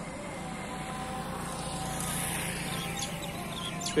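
Roadside traffic: a vehicle passing, swelling to its loudest about two seconds in and then fading, over a steady low hum with a few faint held tones.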